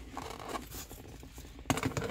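Hands fumbling with plastic shifter-console trim: rustling and scraping, then a quick run of sharp clicks near the end.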